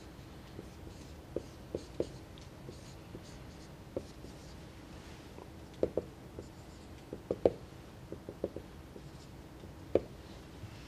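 Marker pen on a whiteboard: irregular short taps and strokes as symbols are written, in small clusters, the loudest about seven and a half seconds in.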